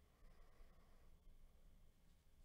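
Near silence: faint low room hum.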